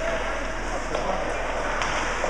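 Ice hockey rink game ambience: a steady din of skating and distant voices, with a sharp knock about a second in and another near the end.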